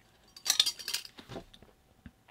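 Light metallic clinks and rattles of a small screw, washer and crimped ring lug being handled and fitted into the terminal of a BS951 bonding clamp on a copper pipe. There is a cluster of clinks about half a second in, then a few scattered ones.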